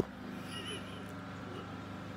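A single sharp click, then a faint steady hum with a few brief high chirps. This is the pause between two rings of a telephone ringback tone heard over a speakerphone.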